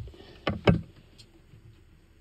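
A few sharp clicks and knocks, the loudest about two-thirds of a second in, as a plug is pushed into its connector.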